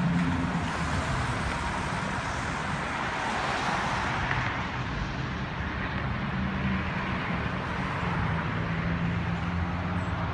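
Road traffic on a bridge roadway, with a vehicle passing: its tyre and engine noise swells about four seconds in over steady traffic noise.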